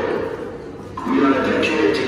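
A voice over a public address system making a fire alarm announcement, with a short pause about halfway through.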